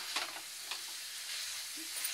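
Okra and chicken frying in a non-stick pan with a steady sizzle, a spatula stirring through the masala with a few light scrapes.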